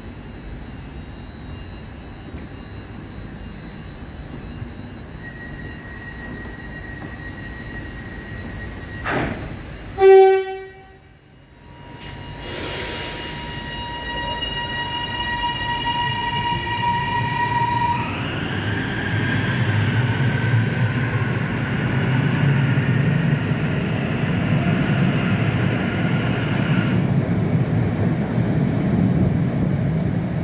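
Electric High Capacity Metro Train at an underground platform. It gives one short, loud horn toot about ten seconds in, followed by a burst of air hiss and a steady whine while it stands. About eighteen seconds in it pulls out, and the low rumble of wheels and running gear grows louder under the whine of its traction motors.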